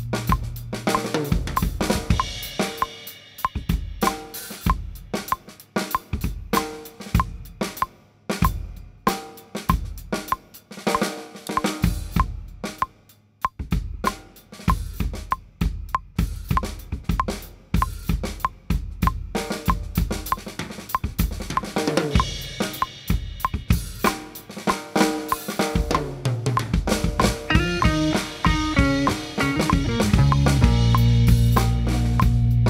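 Acoustic drum kit played with sticks: a busy stream of snare, bass-drum and cymbal hits. It plays over a backing track that thins out about a second in and fills back in with pitched parts near the end.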